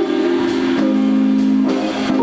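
Live jazz-fusion band of electric guitars, bass and drums holding sustained chords. The chord changes to a new one a little under a second in, and the held notes break off near the end.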